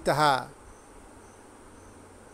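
A man's voice ends a word in the first half-second, then faint crickets chirping in the background: a steady high trill with soft, evenly repeating pips.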